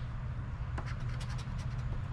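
Coin scraping the coating off a scratch-off lottery ticket in a few short, faint strokes, over a steady low hum.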